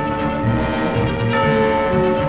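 Orchestral cartoon score playing held chords, which shift to new notes twice.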